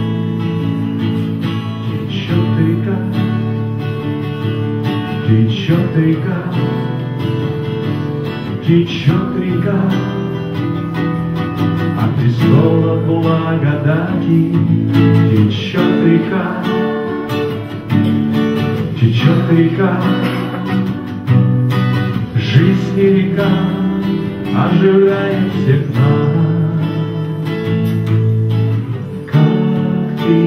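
Two acoustic guitars strummed together, with a man singing into a microphone over them.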